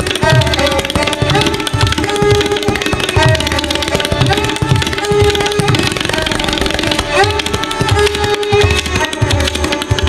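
Tabla solo with dense, fast strokes on the right-hand drum and deep bass strokes on the left-hand bayan, accompanied by a sarangi repeating a bowed melodic phrase.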